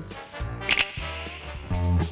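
Background music with a single sudden, sharp swish about three-quarters of a second in, a transition effect between segments; near the end, a band's country-blues guitar music comes in.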